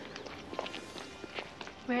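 Low background noise with a few faint, irregular ticks and taps, then a woman begins speaking near the end.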